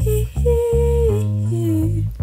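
A woman's voice singing a pop melody over a backing instrumental with steady bass notes. The voice holds one long note, then falls to a lower one near the end.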